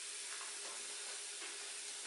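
Chopped pineapple and sorrel sizzling gently in a stainless steel skillet over low heat: a steady, even hiss.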